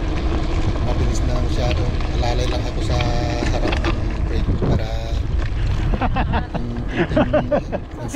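Steady wind rush and low rumble on the camera microphone from a mountain bike rolling downhill on a grooved concrete road, with a voice heard in snatches, most around the last two seconds.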